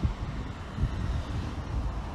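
Road traffic at a busy city junction, with wind buffeting the microphone in irregular gusts; the speaker calls it windy, noisy and a racket.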